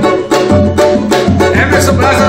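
Brazilian samba banjo (banjo cavaquinho) strummed in a quick repicado pagode rhythm, with a man's voice singing along.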